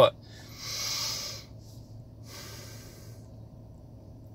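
A man's breath, a strong one lasting about a second, then a softer second breath, with a faint steady low hum beneath.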